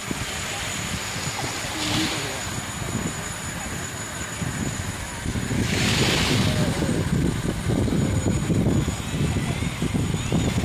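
Outdoor beach ambience dominated by wind buffeting the microphone as an irregular low rumble, with faint distant voices and two brief hissy swells about two and six seconds in.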